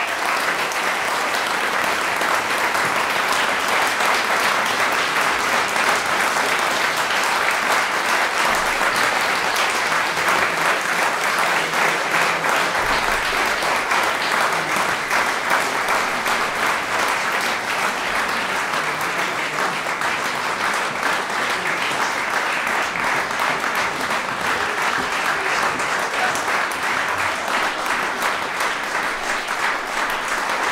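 An audience applauding, dense and steady.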